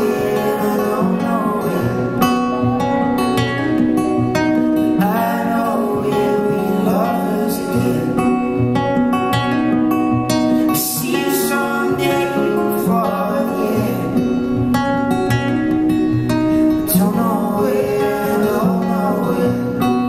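Acoustic guitar strummed live with singing voices; the audience sings along.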